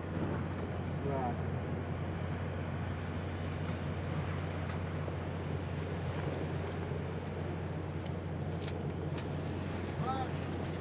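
A steady low hum and rumble under an even noise bed, with a faint, evenly repeated high chirping of night insects. A short gliding call comes about a second in, and a few light clicks come near the end.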